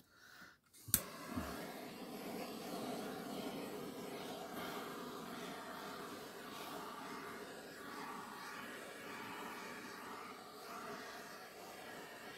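Small hand-held butane torch clicked alight about a second in, then a steady hiss of its flame as it is passed over wet acrylic paint to raise cells, the flame turned down low.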